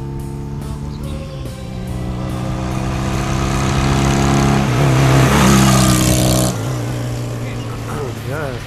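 Cruiser motorcycle engine growing steadily louder as the bike approaches, over the held chords of a rock song. The engine noise cuts off abruptly about six and a half seconds in, leaving the music.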